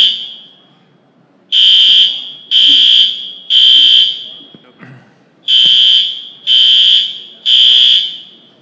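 Fire alarm sounding a loud, high-pitched beep in the temporal-three pattern: three half-second beeps, then a pause of about a second and a half, twice over. This is the standard evacuation signal.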